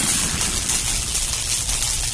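Intro sound effect: a hissing, rumbling whoosh, the tail of a preceding impact hit, slowly fading.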